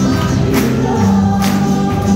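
Live worship song: singers leading over an accompaniment with a steady beat, the congregation joining in as a choir-like sound of many voices.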